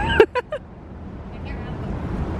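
A woman laughing briefly in a few quick bursts near the start, then a low steady outdoor rumble with faint distant voices.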